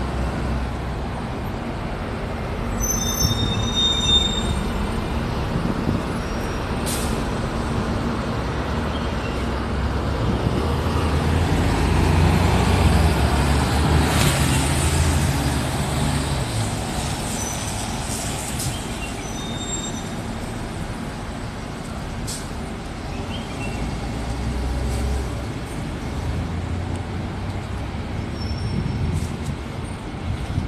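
Road traffic: a steady low rumble of passing vehicles that swells in the middle as a city bus drives past.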